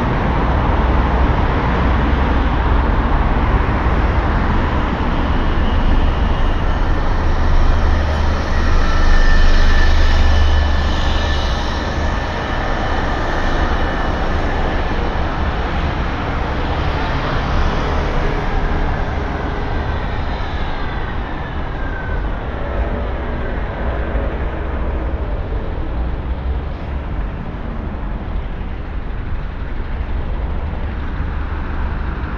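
Busy city road traffic: cars, a delivery lorry and buses passing with a steady rumble, swelling loudest about ten seconds in. Around twenty seconds in a passing vehicle gives a falling whine.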